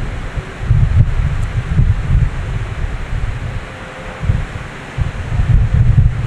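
Air buffeting a close microphone: an uneven, gusty low rumble over a steady hiss, swelling and dropping several times.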